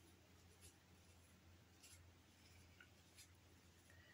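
Near silence: room tone with a faint low hum and a few faint, brief ticks.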